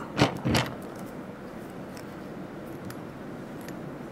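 Handling noise at a fly-tying vise: two short bumps in the first half-second, then faint, light clicks of small metal tools, including a whip finish tool being picked up, over low room hiss.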